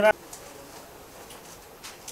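A brief voiced utterance from a person right at the start, then low room noise with a few faint clicks.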